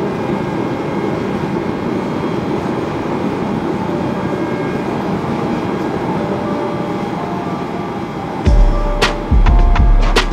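Gas forge burner running with a steady rushing noise. Music with a heavy bass beat comes in about eight and a half seconds in.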